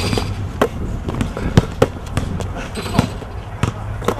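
Basketball bouncing on a concrete court: about half a dozen sharp, irregularly spaced thuds as the ball is dribbled and played, over a low steady hum.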